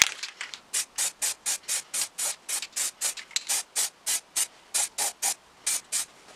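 Aerosol spray paint can hissing in short, quick bursts, about four a second, as paint is sprayed onto a plastic power-tool housing.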